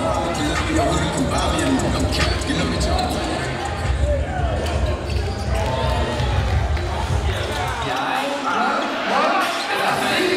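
A basketball being dribbled on a hardwood gym court, with voices of players and spectators in the hall.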